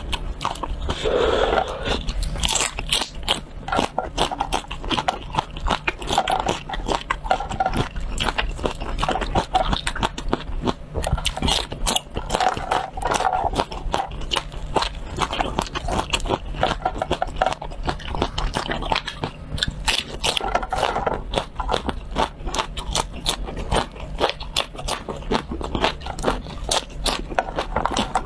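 Close-miked crunching and chewing of raw red chili peppers, dense rapid crunches throughout.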